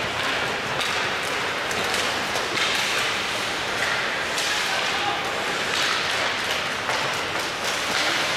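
Ice hockey play in an indoor rink: skates scraping the ice and repeated clacks of sticks and puck, with indistinct spectators' voices, all echoing in the large arena.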